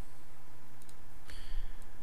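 A few faint computer mouse clicks over a steady low hum, the clearest about 1.3 seconds in.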